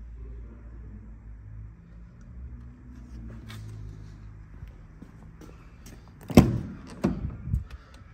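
Low rumble of the camera being carried, then a loud car-door thump about six and a half seconds in, followed by two lighter clunks, as the Range Rover Sport's door is shut or handled.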